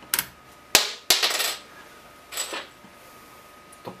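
Plastic snap-on modules of an electronics construction kit being unclipped and handled on their plastic base board. There are a few sharp clicks in the first second and a half, with short scraping after them, and one more brief scrape about two and a half seconds in.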